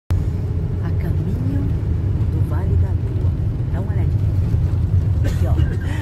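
Tour coach under way, heard from inside the passenger cabin: a steady low rumble of engine and road noise.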